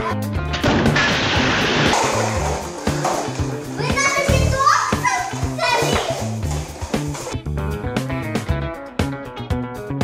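Background music with children's excited voices over it. About half a second in, a tower of paper cups collapses in a papery clatter lasting a second or two. From about seven seconds in only the music continues.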